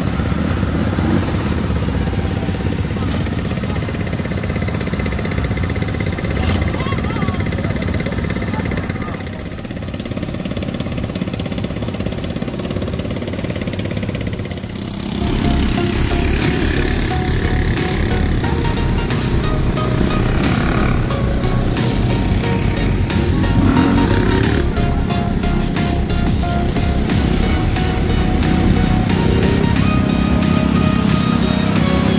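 Quad bike (ATV) engines running and pulling away, with voices around them and background music. The sound gets louder and busier about halfway through.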